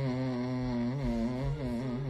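A young man humming a tune in long held notes, the pitch wavering slightly and stepping between a few notes.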